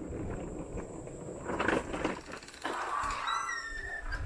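An upright vacuum cleaner, switched off, wheeled over pavement, with rustling and knocking handling noise, and a brief high squeak near the end.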